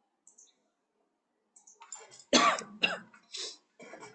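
A person coughing, a short fit of about four coughs in quick succession starting about a second and a half in, the first full cough the loudest.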